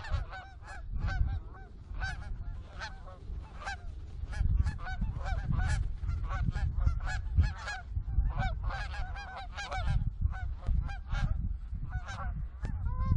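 A large flock of geese calling overhead, many short honks overlapping without a break, with wind rumbling on the microphone.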